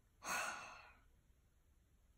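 A woman's sigh: one breathy exhale that starts just after the beginning and fades out within about a second.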